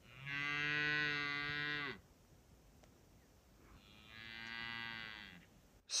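Cattle mooing: two long moos, each lasting a little under two seconds, the second quieter than the first.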